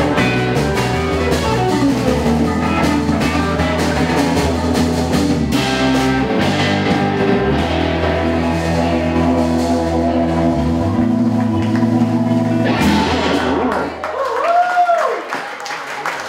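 Live blues-rock band playing the end of a song, with a Fender Stratocaster electric guitar, bass, drums and keyboard. The band stops about thirteen seconds in, and a short tone that rises and then falls follows.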